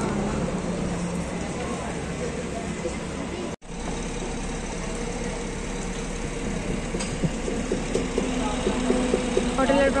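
Roadside highway noise: vehicle engines running and passing, with people talking. The sound drops out suddenly for an instant about three and a half seconds in, and a voice speaks near the end.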